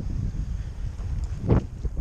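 Heavy wind buffeting the microphone: a steady low noise, with a short louder gust about a second and a half in.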